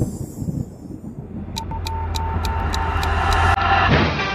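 A sound-effect build-up at the head of an edited music track: a low rumble, joined about a second and a half in by a pulsing beep and sharp clicks, growing steadily louder.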